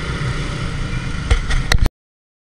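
Motorcycle running in traffic, a steady engine and road rumble heard from the rider's camera, with a few sharp knocks near the end before the sound cuts off suddenly.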